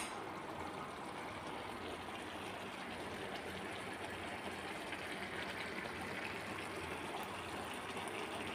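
Zarda (sweet saffron-yellow rice) cooking in its sugar syrup in a pan on the stove, giving a steady soft hiss with faint crackles.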